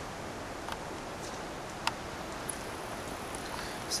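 Quiet steady background hiss with a few faint, sharp clicks, the clearest just under two seconds in.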